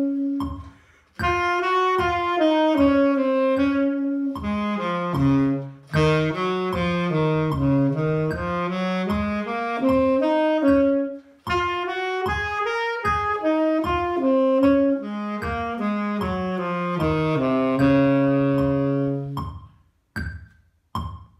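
Tenor saxophone playing a range-extension exercise: phrases of short, separate notes that step down into the instrument's low register and land on held low notes. Brief breaths for air break the phrases about a second in, midway and again just past the middle.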